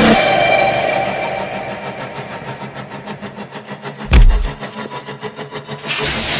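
Superpower sound effects laid over the film. A loud energy surge fades over the first couple of seconds into a rough, pulsing rumble, with a single heavy boom about four seconds in.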